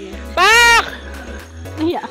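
A person's loud, high-pitched shout: one short call, about half a second long, that rises and then falls in pitch. Background music plays underneath.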